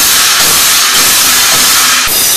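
Drum-kit cymbals, Sabian Pro, struck continuously so that they blend into one loud, steady wash of hiss with only faint drum hits beneath.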